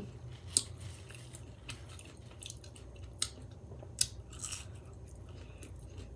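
A person chewing food close to the microphone, with a few scattered mouth clicks and smacks over a low, steady hum.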